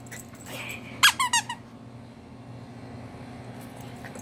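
A squeaky dog toy squeaked about three times in quick succession about a second in.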